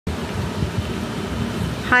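Steady low rumble and hiss of background noise, with a woman saying "hi" right at the end.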